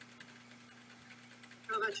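A steady low hum with faint scattered ticks, then a person's voice starts near the end.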